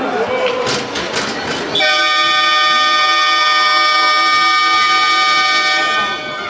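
Ice hockey arena's end-of-period horn: one long, steady blast of about four seconds, starting about two seconds in as the game clock reaches zero. A few sharp knocks come before it.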